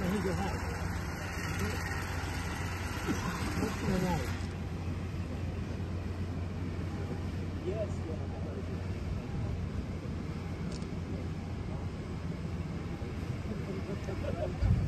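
Open-air ambience: a steady low hum under scattered, indistinct voices of people nearby, with a windy hiss that stops abruptly about four seconds in.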